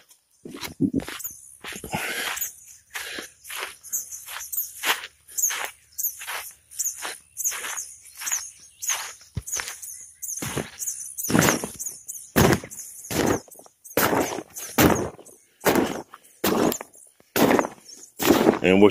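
Footsteps on the deflated vinyl of an inflatable water slide: a steady run of short scuffs and thuds, about two a second.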